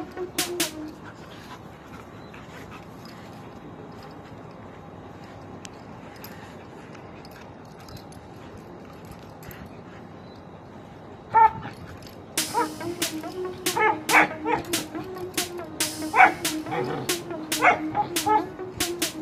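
A dog gives short, high-pitched barks or yelps: one loud one about eleven seconds in, then several more near the end. Background music with a steady beat comes in about twelve seconds in. Before that there is only a faint steady hiss.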